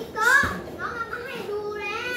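A young child's high-pitched voice, calling out in two or three long drawn-out stretches with pitch rising and falling.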